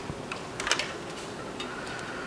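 A few light, irregular metal clicks as a quick-connect fitting is handled and threaded by hand onto a sandblast pot's air piping.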